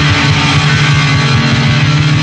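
Speed metal from a restored 1984 demo tape recording: electric guitar riffing fast over bass.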